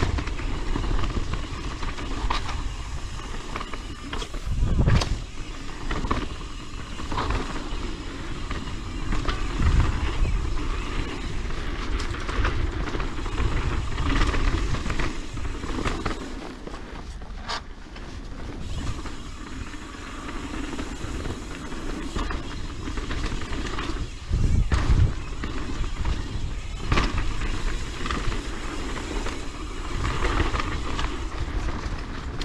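Propain Tyee full-suspension mountain bike riding down dirt singletrack: a steady rush of tyre and riding noise with rattles, and several heavy thumps as the bike hits bumps.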